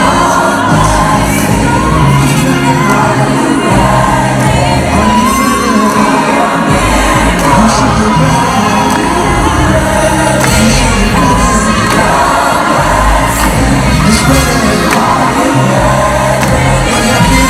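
Live concert music over an arena sound system, with singing carried over a steady bass line and the crowd cheering along.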